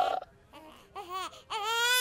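A baby crying: a few short whimpering cries, then a loud, high, sustained wail from about one and a half seconds in.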